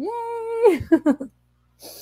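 A woman's voice gives one long, excited shout of "Yeah!" lasting under a second, then a few short voiced sounds and a faint breath near the end.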